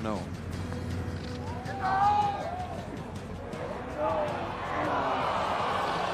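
Golf gallery reacting to a missed short par putt: drawn-out voices of dismay as the ball kicks away from the cup, then a swell of crowd noise near the end.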